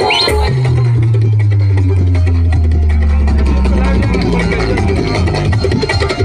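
Loud dance music. About half a second in the beat drops out and long held low bass notes carry the music for several seconds; the beat starts coming back near the end.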